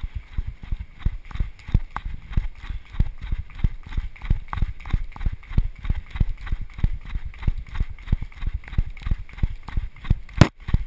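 Skateboard rolling fast over a hard floor, its wheels knocking over the joints in a rapid, uneven run of clacks, about five a second, picked up close to the board.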